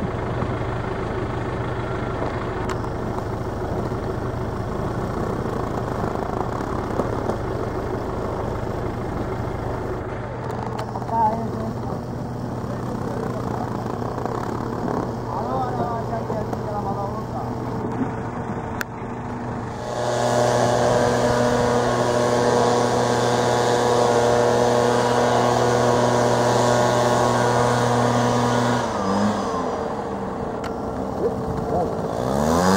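A small engine running at a steady speed, growing louder about twenty seconds in and cutting off about a second before the end.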